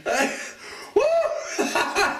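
A young man laughing out loud in a few bursts, his voice rising and falling in pitch.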